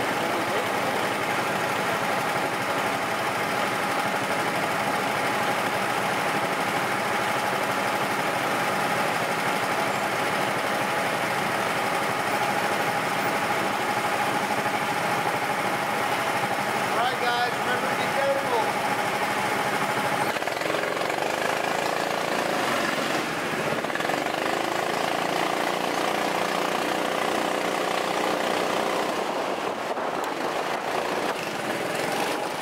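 Go-kart motors running in a steady drone with a held tone while the karts wait at the pit exit. About twenty seconds in the tone starts to rise and fall as the karts pull away onto the track.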